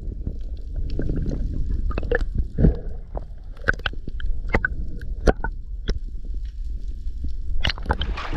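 Underwater sound through a camera housing: a steady, muffled low rumble of moving water, with scattered sharp clicks and knocks every second or so.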